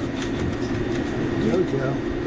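Steady rumble of a commercial fast-food kitchen at the fry station, with faint voices in the background.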